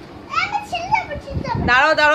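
Young children's voices in short bursts of babble and chatter, with a soft low bump about one and a half seconds in.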